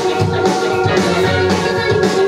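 Live band playing a song at full volume: drums, electric bass, electric guitar and keyboard, with trumpet and another wind instrument playing a melody line.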